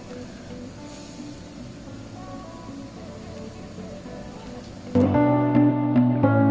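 Background music, faint at first, then suddenly much louder about five seconds in, with strong held bass notes.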